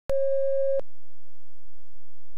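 Steady electronic test tone of the kind recorded with colour bars on a videotape, cutting off sharply under a second in, leaving a faint steady hum at the same pitch.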